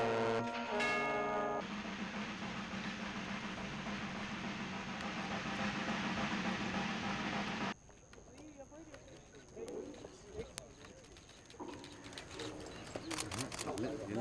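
Police brass band with trombones playing, breaking off after about a second and a half into a steady rushing noise. About halfway through it cuts off suddenly to a quieter murmur of voices, which grows louder near the end.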